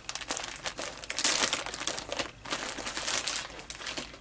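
Clear plastic bag crinkling and rustling in irregular crackles as a braid of roving is pulled out of it, loudest about a second and a half in.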